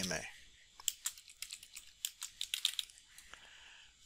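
Typing on a computer keyboard: a quick run of light key clicks starting about a second in and stopping shortly before the end.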